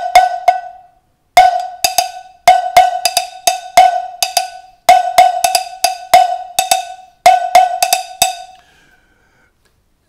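Handheld cowbell struck with a wooden drumstick in a syncopated Latin-style pattern, moving between the open edge and the area nearer the mounting end. The strikes come in quick phrases, each with a bright ringing tone, and they stop about eight seconds in.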